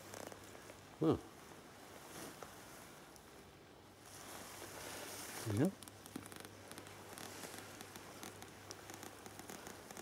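Quiet outdoor background with faint rustling, broken by two short spoken words.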